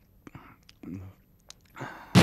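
A man's faint breathy murmurs: two short, low vocal sounds about half a second apart, with a few soft clicks between them.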